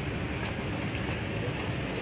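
Steady street noise: a continuous low traffic rumble with a hiss over it, no distinct events standing out.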